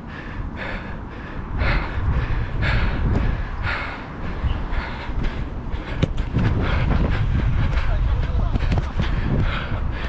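Heavy breathing of a running footballer, about one breath a second, over a low rumble of wind and movement on a body-worn camera microphone. A single sharp thud of a football being kicked comes about six seconds in.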